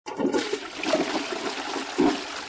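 A toilet flushing, its water rushing and gurgling.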